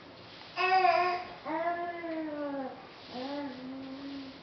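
A baby making three drawn-out, vowel-like voice sounds. The first, about half a second in, is the loudest, and the second slides down in pitch.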